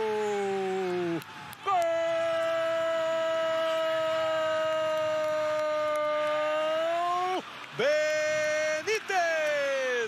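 A football TV commentator's drawn-out goal cry, "gooool", from a single voice: a falling call, then one long steady note held for about six seconds, then two shorter held calls near the end.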